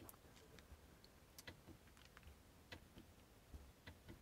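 Near silence with a few faint, sharp clicks, some of them in close pairs, from the G63's Dynamic Select switch being pressed to step through the drive modes.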